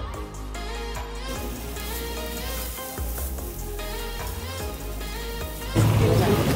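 Background music with held notes over a low bass, cutting about six seconds in to louder, noisy live ambience.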